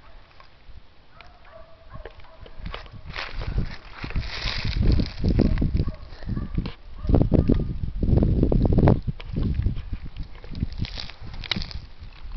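A man straining with heavy grunting breaths as he bends a bent katana blade back by hand. The effort comes in irregular bursts, heaviest in the middle and latter part, with rustling of clothing and leaves.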